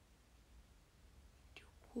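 Near silence: quiet room tone with a faint low hum, then a soft voice near the end as a young woman starts speaking again.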